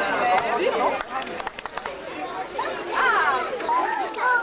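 Outdoor chatter of a gathered crowd of adults and children talking over one another, with a few light clicks about a second and a half in.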